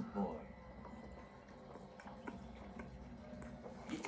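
Faint mouth and chewing sounds of a man eating a piece of salmon nigiri, after a short vocal sound just at the start, over low room tone.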